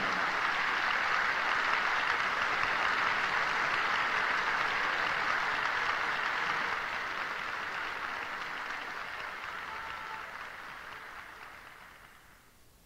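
Opera audience applauding, a steady even clatter of many hands that fades out over the last five seconds or so.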